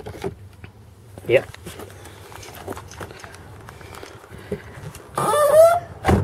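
Car door hinges creaking as the door swings open: a short squealing, slightly rising creak near the end. It follows a few soft clicks and rustles from the glove box.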